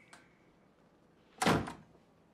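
A door shutting: one short, sudden impact about one and a half seconds in.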